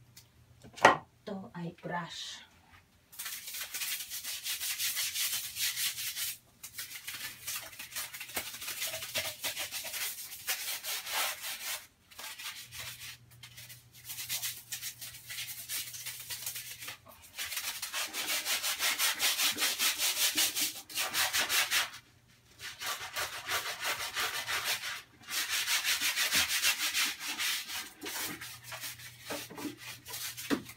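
Sponge scrubbing a wet, soaped bathroom surface: runs of quick back-and-forth rubbing a few seconds long, broken by short pauses, after a couple of light knocks in the first seconds.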